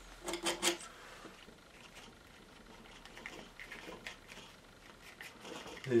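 Faint, scattered scraping strokes of a palette knife working oil paint on a palette board.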